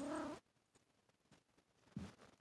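A domestic cat gives one short meow, under half a second long, with a rise and fall in pitch at the very start.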